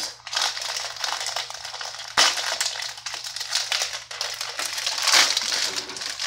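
Plastic wrapper of a Peeps package being torn open and crinkled, a continuous crackling with a sharp snap about two seconds in.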